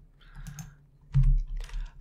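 Typing on a computer keyboard: a quick, uneven run of keystroke clicks, the heaviest a little over a second in.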